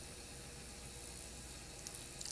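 Faint steady hiss of room tone with a low hum underneath, and a couple of tiny ticks near the end.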